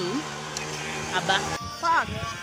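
A woman speaking a single word over a steady low hum; the sound cuts abruptly about one and a half seconds in, and another voice starts near the end.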